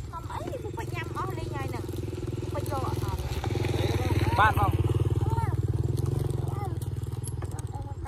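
A small engine running steadily, growing louder for a few seconds in the middle before easing off again.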